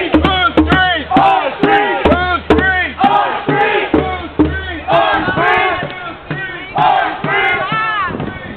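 A crowd of protesters chanting and shouting loudly in short, rising-and-falling syllables, several voices overlapping, with intermittent low rumbling beneath.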